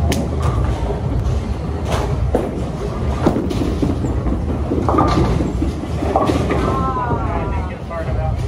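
Bowling alley din: a steady low rumble of balls rolling down the lanes, broken by several sharp clacks of pins and balls, with voices in the background.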